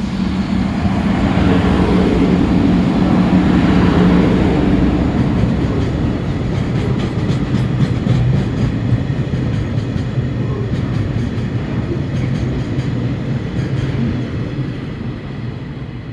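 A JR Freight electric locomotive passes close by at speed with a steady hum, followed by a line of Taki tank cars whose wheels clatter rhythmically over the rail joints. The noise is loudest as the locomotive goes by and fades as the last cars pass.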